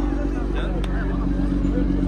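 A car engine idling with a steady low hum under crowd murmur, with one sharp click about halfway through.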